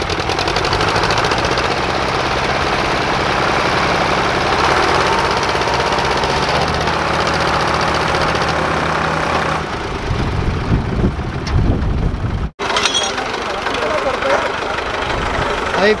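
Several diesel tractor engines running together under load, hitched in a chain and straining to pull a fully loaded sugarcane trolley out of a wet field. The engine note is steady, turns rougher and deeper about ten seconds in, and breaks off for a moment just after twelve seconds.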